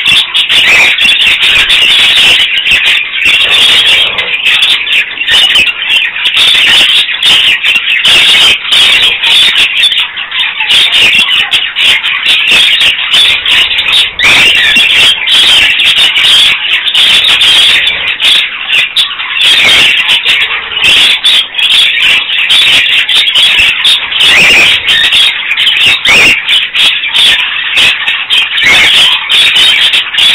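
A flock of budgerigars chattering and warbling all at once: a loud, high-pitched, unbroken din of chirps.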